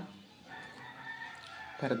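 A rooster crowing once, a single long drawn-out call, quieter than the voices around it.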